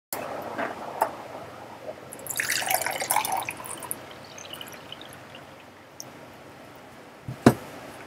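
Water poured from a plastic filter pitcher into a drinking glass: a short splashing pour of about a second and a half, with a few drips trailing off. A few light handling clicks come before it, and a sharp knock near the end is the loudest sound.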